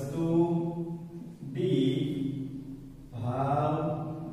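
A man's voice speaking in long, drawn-out, sing-song syllables with little change in pitch, three stretches in a row.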